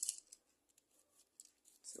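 A short scratchy rustle, then faint scattered clicks, as a small die-cast toy car is handled and turned over in the fingers.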